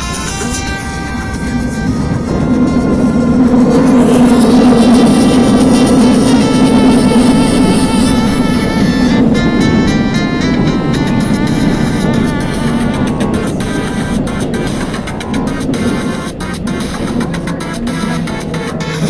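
Seoul Metro Line 2 train running between stations, heard from inside the carriage: a loud rumble that swells and eases, electric motor tones that step in pitch about nine to eleven seconds in, and sharp rail clicks through the second half.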